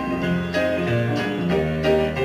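Instrumental break of a cabaret song: the accompanying band plays on between sung verses, with a moving line of low notes under it and no voice.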